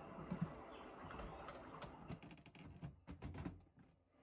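Faint bird calls, including cooing, over a low hiss, with a few quick clicks near the end.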